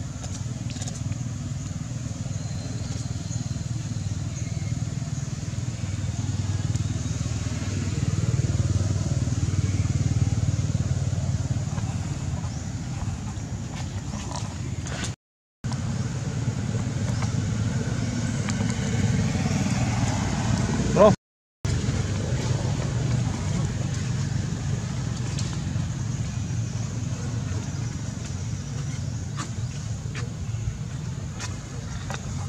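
Steady low rumble of distant motor traffic. Near two-thirds of the way through there is a brief, loud, high-pitched squeal, and the sound cuts out to silence twice for a moment.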